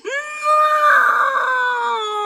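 A woman wailing in distress: one long, loud cry held for over two seconds, rising at the start and sagging slightly in pitch toward the end.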